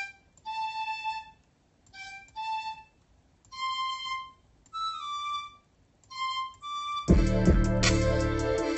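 A melody on a flute-like software instrument in FL Studio, playing short high notes one at a time with gaps between. About seven seconds in, a full beat with drums and deep bass comes in.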